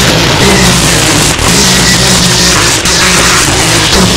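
String trimmer engine running at high revs while cutting grass and weeds, mixed with a loud music track.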